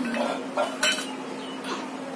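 Small stainless steel bowl clinking and scraping on a concrete floor as a child's hand knocks it about: a few sharp metallic clinks, the loudest about a second in.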